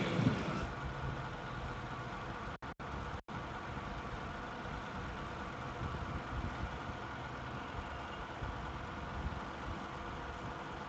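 Steady low background rumble and hiss of a crowded hall, with a faint hum and no clear voices; the sound cuts out for an instant three times about three seconds in.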